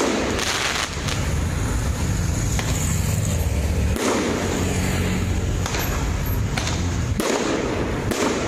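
Aerial fireworks launched and bursting overhead: several sharp bangs and cracks at irregular intervals, over a steady low rumble.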